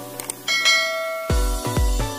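A bright notification-bell chime sound effect rings about half a second in, just after a couple of faint clicks, and rings on as it fades. Near the middle, electronic dance music with a heavy bass kick about twice a second starts.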